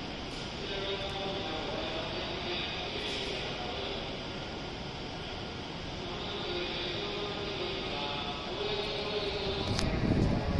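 A slow melody of held chime-like notes plays over the station platform's public-address speakers, over a steady background hum. Near the end, a low rumble and a few sharp clicks come in.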